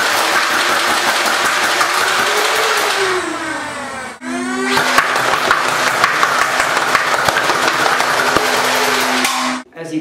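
Modified Nerf Rapidstrike and two integrated Swarmfire blasters firing on full-auto: electric motor whine under a rapid, continuous stream of dart shots. The Rapidstrike's flywheels and pusher run on a voltage-upgraded battery harness. Two long bursts with a brief break about four seconds in, the second cutting off suddenly near the end.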